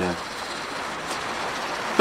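Heavy rain, really loud, falling as a steady, even hiss heard from inside the workshop.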